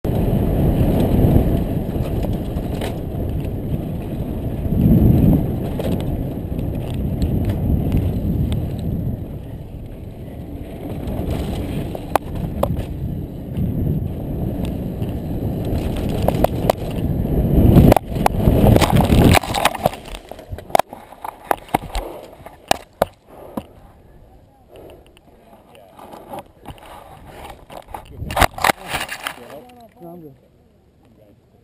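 Wind buffeting a helmet-mounted camera and a downhill mountain bike's tyres and frame rattling over a rough dirt track at speed. A loud, clattering burst about eighteen seconds in marks the crash; after it the sound drops sharply to scattered clicks and rustles.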